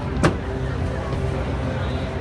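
Live orchestra holding sustained notes over a deep low drone, heard from the audience in a large arena, with one sharp knock about a quarter second in.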